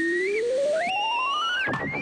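Theremin-like electronic sound effect: a tone rising steadily in small steps, with a higher whistling tone held over it that breaks off briefly, comes back higher and cuts off with a drop near the end. It scores the serpent's fire-breath blast.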